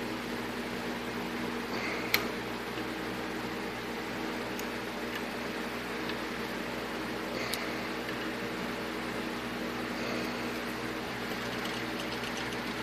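Electric motor of a 6-inch bench grinder running with a steady hum, spinning a polishing-wheel adapter on its shaft that runs a little wobbly. Two light clicks, one about two seconds in and one past the middle.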